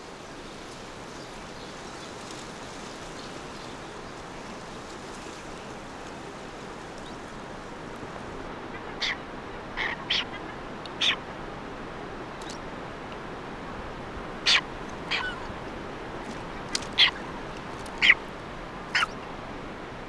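Boobies calling at a nesting colony: about ten short, separate calls, starting about nine seconds in, over a steady background hiss.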